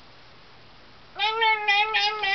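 A high-pitched voice making a long, drawn-out, slightly wavering squeaky call, starting just over a second in: a pretend voice for the hungry compost bucket.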